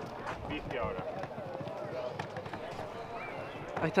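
Faint voices of people talking at a distance, with a few light clicks; a man begins to speak close by near the end.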